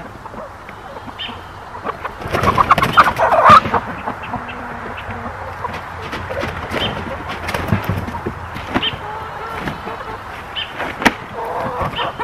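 Chickens clucking and squawking at close range, loudest in a burst of calls about two to three and a half seconds in, with scattered knocks and rustling from someone moving around inside the small wooden pen.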